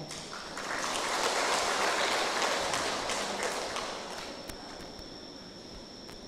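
A large seated audience applauding together. The clapping swells within the first second and dies away over about four seconds.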